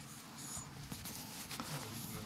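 Faint rustling of paper handouts being passed from hand to hand, with a few small clicks.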